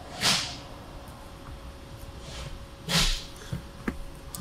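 Two short, sharp breaths through the nose, like sniffs or snorts, one just after the start and one about three seconds in.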